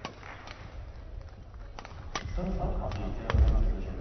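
Badminton rally: several sharp racket strikes on the shuttlecock, spaced about a second apart. Over the last second and a half, voices rise in the hall.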